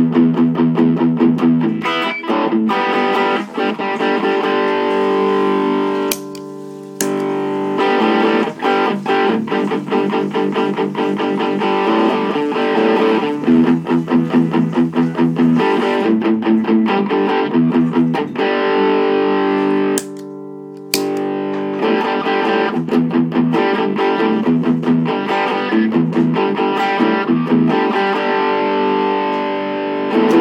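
Fender Stratocaster electric guitar played through an MXR overdrive pedal into a Mesa/Boogie amp, chugging on distorted rhythm chords. The playing stops briefly about six seconds in and again about twenty seconds in.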